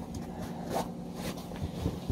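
Scuffing and rubbing of a reusable overshoe being worked off a boot by the feet, with a few short scuffs near the end.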